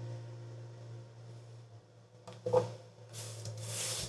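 An acoustic guitar's last chord dies away, then comes handling noise: a light knock on the guitar about two and a half seconds in, and a rubbing, brushing sound near the end.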